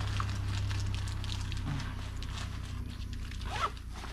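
Backpack being handled and packed by hand: scattered rustles, scrapes and small clicks of fabric, straps and gear, over a steady low hum.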